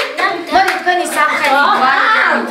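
People's voices talking, with a few hand claps among them.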